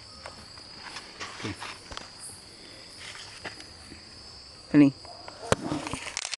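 A steady high-pitched chorus of night insects such as crickets, with faint handling rustles and clicks. About five seconds in there is a short loud vocal sound, then a sharp click.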